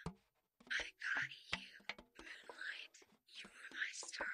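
Close-up whispered reading, in short phrases separated by brief pauses, with small sharp clicks between them.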